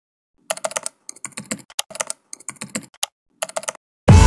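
Rapid, irregular clicking of keys being typed on a computer keyboard, in several quick runs with short pauses between them.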